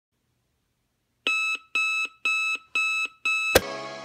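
Digital alarm clock going off: five short electronic beeps, about two a second, starting a second in. A sharp click comes near the end, and music starts.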